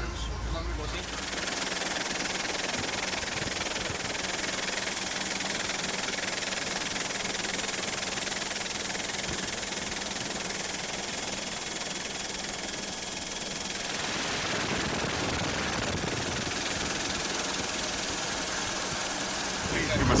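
Helicopter running steadily: an even rushing noise with a thin high whine on top, changing slightly about fourteen seconds in.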